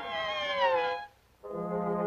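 Orchestral cartoon score: a high melodic phrase slides downward for about a second and breaks off into a brief pause. Brass then comes back in on low held notes.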